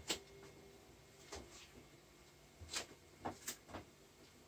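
A few light clicks and knocks in a quiet kitchen: one at the start, one about a second in, then four close together near the end, over a faint steady hum.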